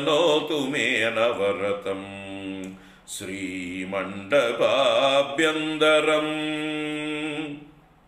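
A man chanting Sanskrit stotram verses in a melodic recitation, his voice gliding between long held notes. There is a short break about three seconds in, and the chant stops just before the end.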